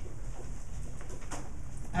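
Dry-erase marker writing on a whiteboard, a few faint short strokes over a steady low room hum.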